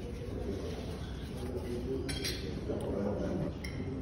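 Light clink of white ceramic tableware, china knocking against china, about two seconds in, with a fainter clink near the end. Behind it runs a steady murmur of indistinct voices.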